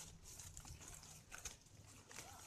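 Near silence, with a couple of faint short rustles or clicks about one and a half seconds in.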